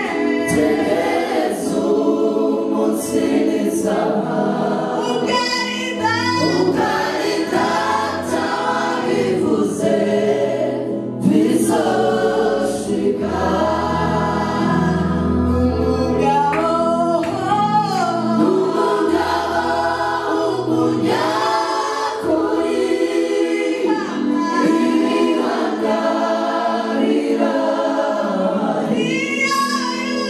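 A church worship team and choir sing a gospel praise song together, with mixed men's and women's voices and lead singers on microphones. A low bass accompaniment comes in about six seconds in and drops out a little after twenty seconds.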